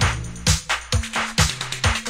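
Hi-NRG dance music with a kick drum on every beat, a little over two a second, under a pulsing bassline and bright hi-hats.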